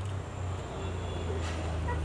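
Low, steady rumble of car engines idling on the street, with a single short click about one and a half seconds in.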